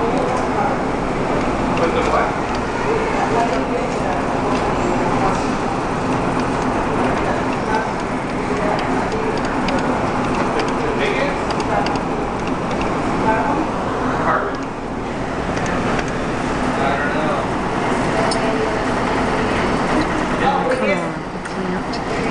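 Busy shop background noise: indistinct chatter of other people's voices over a steady low hum, with no words clear enough to make out.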